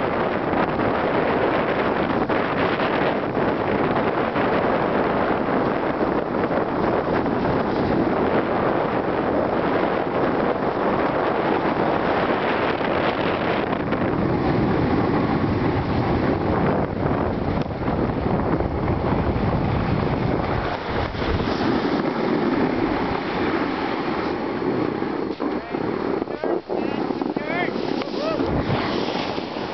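Wind rushing over the microphone with the scrape and hiss of snow under a moving rider, a loud steady noise without letup while sliding down packed snow.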